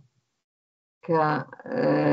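About a second of dead silence, then a woman's voice comes back in with a drawn-out vowel held steady on one pitch.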